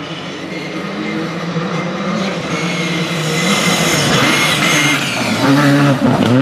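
Škoda Fabia rally car's turbocharged 1.6-litre four-cylinder engine running hard as the car approaches on a gravel stage. It grows steadily louder and jumps in level as the car arrives close, about half a second before the end.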